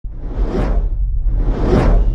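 Two whoosh sound effects, each swelling up and falling away, about a second apart, over a steady deep bass drone: the sound design of a record label's animated logo intro.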